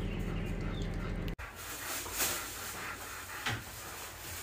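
Dog panting, with soft, breathy puffs; the sound changes abruptly about a second and a half in.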